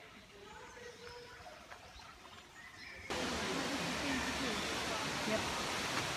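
Faint voices at first, then about three seconds in a sudden cut to a steady, loud rushing of falling water from the tropical biome's waterfall, with voices over it.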